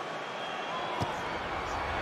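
A boot strikes a rugby ball in a place kick at goal: one sharp thud about a second in, over a hushed stadium crowd whose noise swells after the kick.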